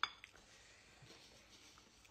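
A single sharp clink of a dinner plate being knocked, ringing briefly, then faint room tone.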